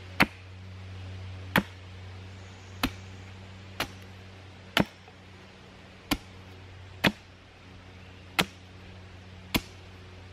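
Hatchet chopping a point onto a wooden stake held upright on a stump: nine sharp strikes, about one a second.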